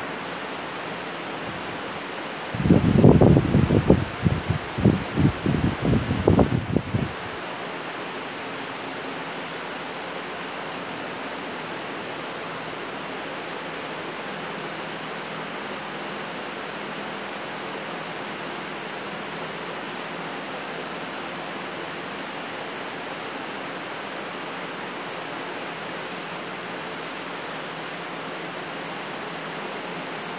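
A steady, even hiss, with a burst of low rumbling knocks lasting a few seconds about two and a half seconds in.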